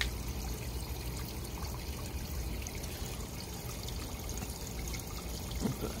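Small pump-fed water feature trickling steadily: water spills from a tilted pot into a one-foot basin.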